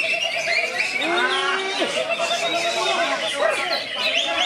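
Cucak ijo (green leafbird) singing among many other songbirds at once, a dense mix of overlapping whistles, warbles and trills, with a steady warbling trill running through.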